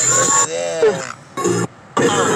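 A voice in a rap freestyle, making short vocal sounds without clear words in a few bursts with brief pauses, over background music.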